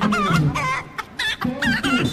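Chicken clucking: about four short, wavering clucks roughly half a second apart.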